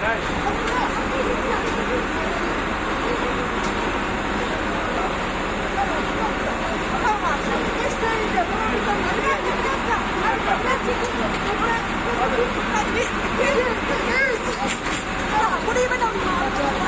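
Several people's voices, indistinct and overlapping, over steady background noise.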